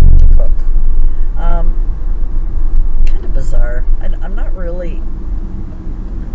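Low road rumble inside a moving car's cabin, loudest for a moment at the start, with a woman's voice coming in briefly a few times.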